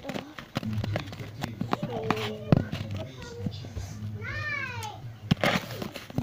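A high, wavering vocal call that rises and then falls, about a second long, past the middle, with a shorter one earlier. Knocks and rubbing from a handheld tablet being moved run underneath.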